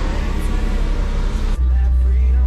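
Car cabin noise while driving: steady low road and engine rumble. About a second and a half in it cuts abruptly to a louder, steady low engine drone, as of the car's engine running while stationary.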